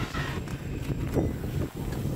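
A vehicle engine idling as a steady low hum, with wind on the microphone.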